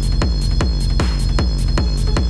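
Hard techno playing in a DJ mix: a heavy kick drum on every beat, about four a second, each hit dropping in pitch, over a rumbling bass, with hi-hats between the kicks and a steady high tone.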